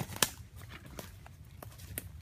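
Footsteps through dry leaf litter and brush, making irregular crackles and snaps; the loudest is a sharp snap just after the start.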